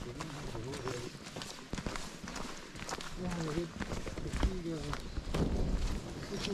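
Footsteps on a dirt and leaf-litter forest trail as several people walk, with voices talking indistinctly in the background and a low bump about two-thirds of the way through.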